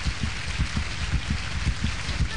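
An audience applauding: a steady patter of many hands clapping at once.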